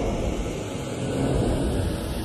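Drum and bass build-up with the drums out: a rumbling noise bed under a sweep that rises steadily in pitch.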